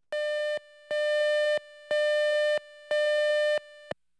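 Tape countdown leader beeps: a steady, buzzy electronic tone sounds four times, once a second, each beep lasting about two-thirds of a second, marking the seconds of an edit-bay countdown.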